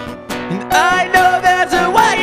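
Acoustic guitar strummed with a man singing over it. The sound drops back briefly at the start, then the strumming and a held, wavering sung line come back in just under a second in.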